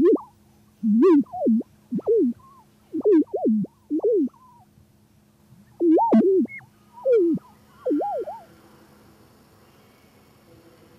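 Short swooping electronic tones in quick phrases about a second apart, over a steady low hum, from a gallery sound installation. There is a gap in the phrases about halfway through, and the tones stop about eight and a half seconds in.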